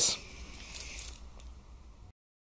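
Faint light metallic jingling and clicking of a dog collar's ring and clip as the LED light on it is handled.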